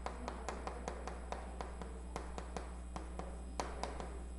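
Chalk writing on a blackboard: a quick, faint series of light chalk clicks, about five a second, as the strokes of a word are written.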